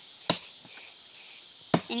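Axe chopping into a fallen wooden log: two blows about a second and a half apart, the second louder.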